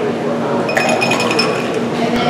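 Stainless-steel cocktail shaker tin clinking against glass, with a metallic ringing for about a second starting just before the middle, as a shaken drink is poured from the tin into a highball glass.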